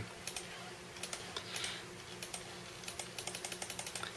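Computer keyboard keys being pressed to step through a BIOS menu: a few scattered clicks, then a quick run of presses in the last second.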